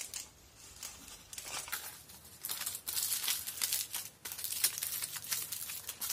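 Aluminium foil crinkling as it is wrapped and pressed around a fingertip. Irregular crackling starts about a second and a half in and comes in clusters after that.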